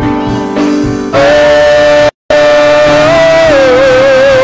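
Live gospel praise-and-worship music: a singer holds a long wavering note into a microphone over instrumental accompaniment. The sound cuts out completely for a split second about halfway through.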